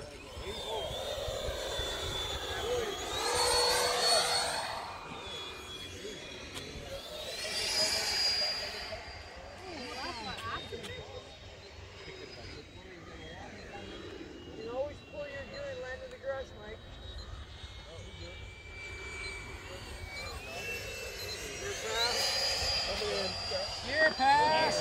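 Electric ducted-fan whine from Freewing F-22 model jets flying past, the high pitch rising and falling with each pass. It swells three times: a few seconds in, around eight seconds, and near the end as one jet comes in to land.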